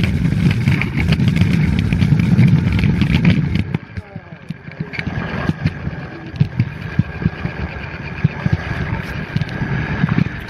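Kick scooter wheels rumbling over concrete, with scattered clicks, stopping about four seconds in. After that come lighter, irregular clicks and knocks.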